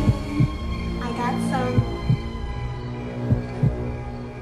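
Heartbeat sound effect: paired low thumps, a double beat about every second and a half, over a steady droning suspense score. A few short falling tones come in about a second in.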